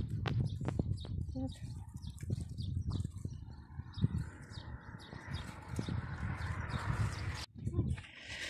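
Scattered clicks and rustling of handling as gloved hands tie garden twine to a wooden stake among cucumber plants. From about four seconds in there is a steadier scratchy rustle, which cuts off suddenly near the end.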